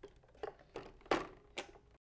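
A few light, irregular plastic clicks and knocks, the loudest just past a second in, as a TurtleBot 4 robot on its iRobot Create 3 base is settled onto its charging dock.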